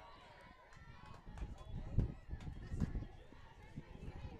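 Outdoor ballpark crowd ambience: faint, indistinct voices of fans and players, with irregular low rumbles and thumps, strongest in the middle.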